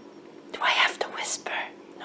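A woman whispering a few short breathy words, starting about half a second in.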